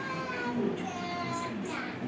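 A child singing or calling out in long, high, drawn-out notes that glide slightly downward.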